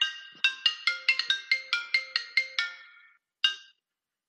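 Mobile phone ringtone: a quick melody of short, bright pitched notes, about five a second, that fades and stops about three seconds in, with one last note just after.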